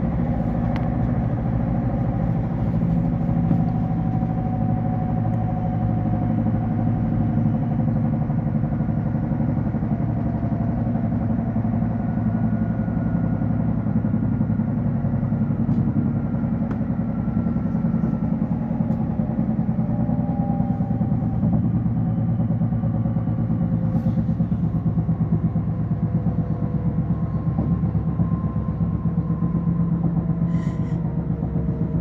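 Inside an electric regional train (Cityjet Xpress) running at speed: a steady low rumble of wheels on track, with thin motor whines above it that drift slowly down in pitch.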